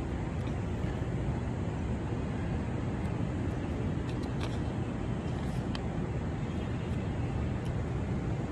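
Steady hum of city traffic rising from the streets below a high-rise, with a few faint clicks scattered through it.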